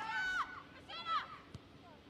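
Distant high-pitched shouts of players on a football pitch: one call at the start and another falling shout about a second in, followed by a single faint knock.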